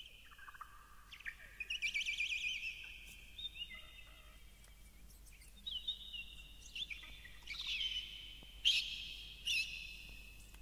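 Birds chirping and singing: a string of high warbling, trilled and sweeping calls, with the loudest calls near the end.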